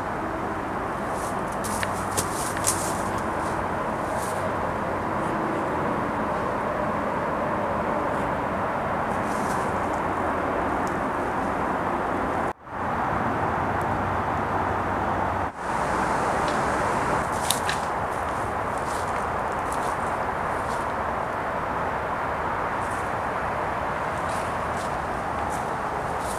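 Steady outdoor background noise, a continuous even hiss with a few faint clicks, cutting out briefly twice, about twelve and fifteen seconds in.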